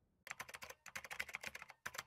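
Keyboard-typing sound effect: rapid key clicks in three short runs.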